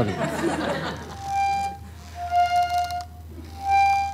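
Small toy button accordion playing three separate held reedy notes on two pitches: a higher note, a slightly lower one, then the higher one again, after a soft rustle at the start.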